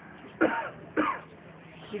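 A man clearing his throat twice, in two short, sudden bursts about half a second apart.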